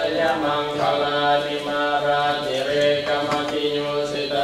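Group of voices chanting Pali Buddhist verses in unison, a continuous recitation held on a nearly steady pitch.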